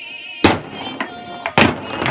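Two sharp knocks of a foosball being struck by the table's rod-mounted players, about a second apart, the second one louder, over background music.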